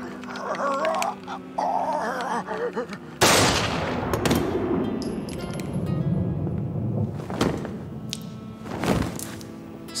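A man's voice bleating in fear for about three seconds, then a single loud handgun shot about three seconds in, its report ringing out in a long echoing decay, over a music score.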